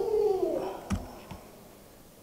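A short hummed vocal sound, like a drawn-out 'mmm', falling slightly in pitch, followed about a second in by two soft clicks, then quiet room tone.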